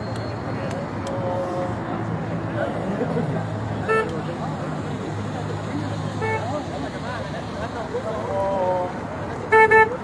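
Car horns giving short toots as cars pass slowly: single brief toots about four and six seconds in, then a louder double toot near the end. Under them is the low running of car engines.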